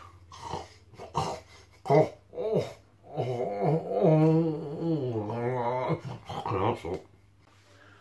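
A man humming with his mouth full while chewing a chip: a few short grunts, then a long, wavering 'mmm' of enjoyment in the middle.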